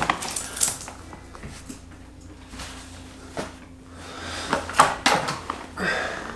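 Scattered light knocks and clicks as a person settles into a desk chair and a small dog jumps up onto the desk, with a faint steady hum underneath. The knocks come singly at first and cluster near the end.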